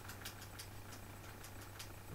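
Faint room tone in a pause: a steady low hum with a few faint scattered light ticks.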